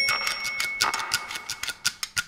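A bare break in a folk song where the singing drops out, leaving a fast, even run of dry ticking clicks. A high ringing, bell-like tone dies away in the first second.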